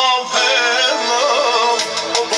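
Loud amplified music: a singer's electronically processed voice carrying a wavering melody over keyboard backing through the PA speakers.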